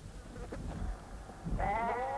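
A single bleat from the flock of sheep and goats, starting about three-quarters of the way in and held, wavering slightly, to the end.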